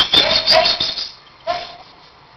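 Short high-pitched vocal sounds from a person, heard in the first second and once more about one and a half seconds in, with thin, band-limited audio.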